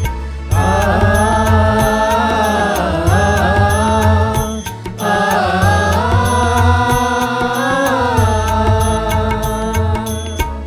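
Offertory hymn music: a sustained melody line in two long phrases of about four seconds each, over a steady ticking beat and bass.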